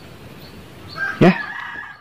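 Rooster crowing once, a held call starting about a second in; before it, only faint background noise.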